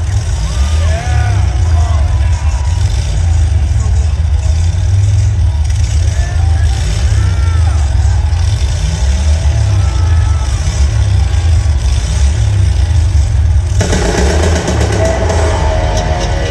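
Motorcycle engine running with a low, uneven note, heard through the arena and mixed with crowd cheering, shouts and whistles. About fourteen seconds in, the band starts and electric guitar comes in.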